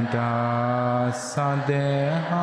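A Theravada Buddhist monk chanting Pali verses in a low, drawn-out voice. He holds one long note, gives a brief 's' hiss a little over a second in, then steps up to a higher held note.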